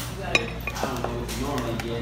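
Tableware clinking: a small ceramic bowl and silverware knocking against a plate and tabletop, one sharp clink about a third of a second in, then a few lighter clicks.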